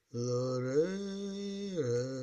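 Music: a low, wordless, chant-like melody of long held notes. It starts just after a brief gap, glides up to a higher note about half a second in, holds it, and glides back down near the end.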